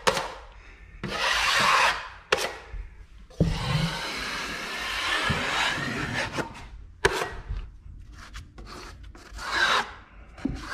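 Steel drywall taping trowel scraping along a taped wall joint, squeezing excess joint compound out from under the tape. There are several strokes, the longest lasting about three seconds in the middle, with a couple of sharp taps of the blade.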